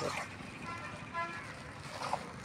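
A vehicle horn sounds faintly in the distance: two short toots about half a second apart.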